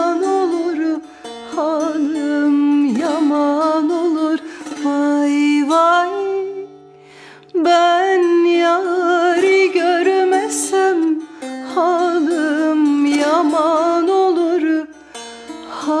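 A woman singing a Turkish folk song (türkü) in long, ornamented phrases with a wavering voice, accompanied by a ruzba, a small long-necked Turkish lute, plucked by hand. The singing breaks off briefly a few times, longest for about a second just before the middle.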